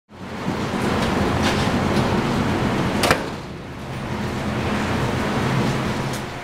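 Steady rushing noise with a low hum underneath, broken by a few short clicks, the sharpest about three seconds in.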